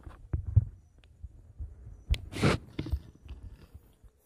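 Irregular low thumps and clicks, with a short loud rustle about two and a half seconds in.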